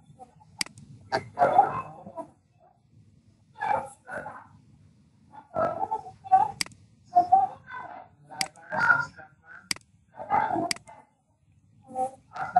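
A person speaking in short broken phrases with pauses between them, and several sharp computer mouse clicks.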